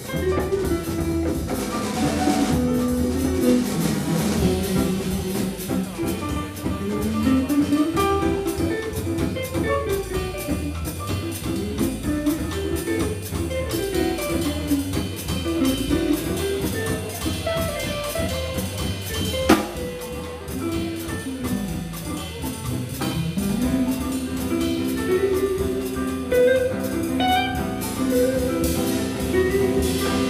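Live jazz combo playing: two electric guitars, an archtop and a solid-body, over double bass and drum kit, the bass line moving up and down under the guitars. A single sharp crack stands out about two-thirds of the way through.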